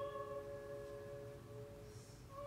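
Opera music played from a vinyl LP on a turntable: a held note fades away over the first second and a half, leaving a short quiet gap with only a faint low rumble.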